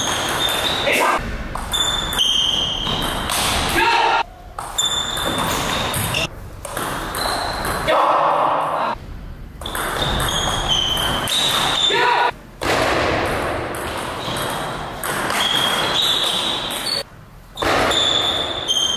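Table tennis rally in a hall: the celluloid ball clicking off rubber paddles and the table, with sneakers squeaking on the sports floor as the players lunge.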